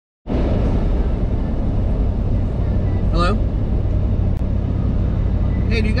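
Steady low road and engine rumble heard inside a moving pickup truck's cabin, with a short voice-like sound about three seconds in.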